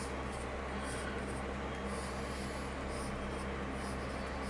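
Pen drawing lines on a sheet of paper, its tip faintly scratching, over a steady low hum.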